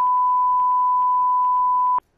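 A censor bleep: one steady, pure electronic beep held for about two seconds and cut off abruptly, masking a spoken answer in a recorded testimony.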